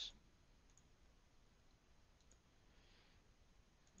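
Near silence: room tone with a few faint computer mouse clicks, spaced a second or more apart.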